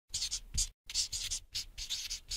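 Marker pen writing lettering: a quick series of short scratching strokes, about four to five a second, with a brief break under a second in.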